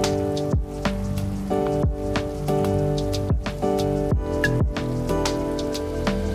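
Chillstep electronic music: sustained synth chords over a slow, steady drum beat of deep kicks and snare hits.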